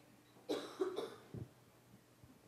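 A person coughing once, a rough burst lasting about half a second, followed by a short low sound.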